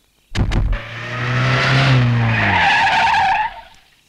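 A car engine catching after a couple of clicks, then running hard as tyres squeal while the car speeds off. The low engine tone sinks in pitch, and the sound fades out about three and a half seconds in.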